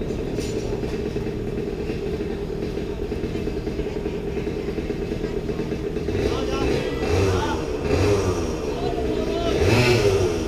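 Several go-kart engines idling together at close range, with throttle blips rising and falling in pitch from about six seconds in, loudest near the end.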